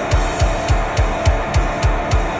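Metalcore band recording: guitar holding under a syncopated run of kick drum hits and cymbal strikes, several a second.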